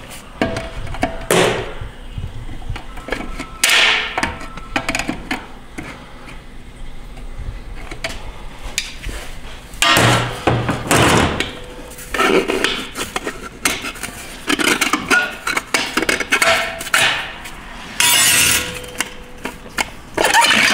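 Repeated metal clanks, clinks and scrapes of a Ford 6R80 six-speed automatic transmission's internal parts being worked loose and lifted out of its aluminium case with hand tools, with the loudest bursts about ten seconds in and near the end. Background music runs under it.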